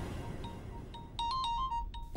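Mobile phone ringtone: a quick melody of short electronic beeps starting about a second in, over background music that fades away.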